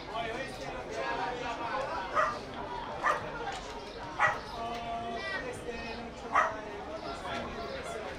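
A dog barking four short times, spread across a few seconds, over the murmur of spectators' chatter.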